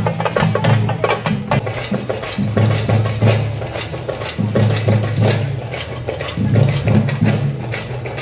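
Live drum music for kavadi dancing in a procession: a fast, dense run of drum strokes over a low held tone that drops out briefly and comes back a few times.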